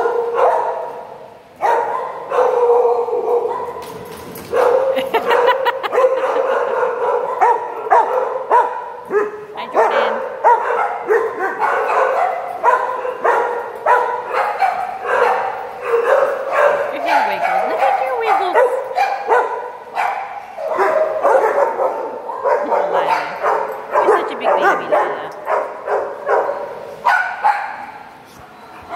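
Dogs barking and yipping in play, in quick, almost unbroken runs of short calls, with a brief lull a few seconds in.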